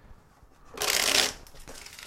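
Tarot deck being riffle-shuffled by hand: a short rush of rapid card flicks about a second in, followed by a few soft clicks as the deck is bridged back together.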